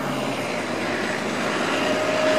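A steady engine drone over outdoor urban noise, slowly growing a little louder.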